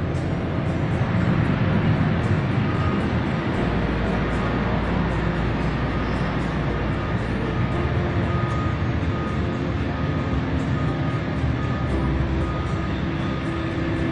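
Jet airliner's engines at takeoff power during the takeoff roll: a loud, steady roar with a deep rumble underneath.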